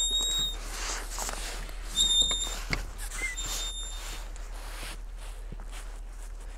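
Three high, steady whistle-like tones, each about half a second long: one at the start, one two seconds in and a fainter one about three and a half seconds in. Under them are faint footsteps.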